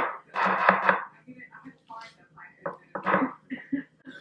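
Wet squishing of a thick sour-cream and cream-cheese mixture handled with a gloved hand and dropped onto chicken breasts in a glass baking dish. There is a loud squish in the first second and smaller ones after it, with another near three seconds in.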